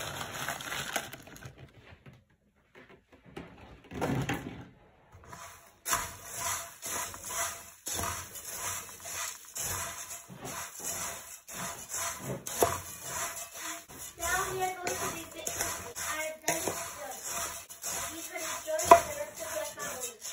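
Puffed rice and fried onions being stirred and tossed with a wooden spatula in a metal pot: a dry rustling with rapid scraping strokes that starts after a short lull a few seconds in, with a voice talking now and then.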